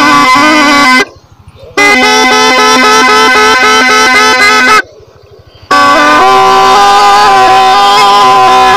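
Snake charmer's been (pungi), a gourd reed pipe, playing a reedy melody over a steady drone. The sound breaks off twice, briefly.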